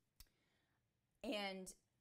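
A pause in a woman's speech: near silence with one faint click a fraction of a second in, then a single short, quiet spoken syllable about halfway through.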